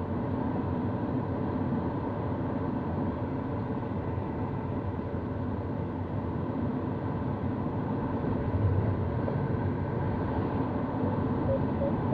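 Steady rush of air over a gliding sailplane's cockpit, heard from inside, with a brief low rumble about nine seconds in. Near the end a short run of evenly spaced, slightly rising beeps starts: an audio variometer signalling climb in rising air.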